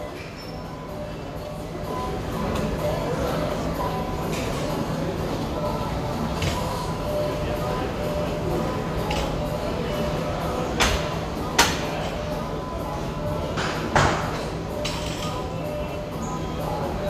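Gym background of music and indistinct chatter, broken in the second half by a few sharp knocks and clanks from barbell work with bumper plates on a rubber floor.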